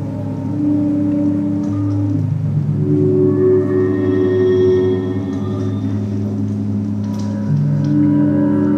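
Ambient electronic music of layered, sustained low drone tones, the held notes shifting to new pitches every couple of seconds.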